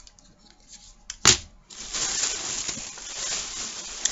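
Packaging being handled: a single sharp click about a second in, then steady rustling.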